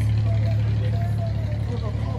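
A steady low engine hum, with faint voices in the background.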